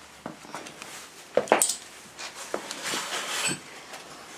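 Handling noises in a garage workshop: scattered knocks and clicks with some rustling, the loudest a pair of sharp knocks about a second and a half in.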